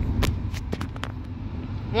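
Low, steady rumble of a car heard from inside the cabin, with a few light clicks in the first second.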